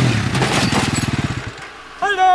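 Sport quad (ATV) engine revving down, its pitch falling as it fades out about a second and a half in.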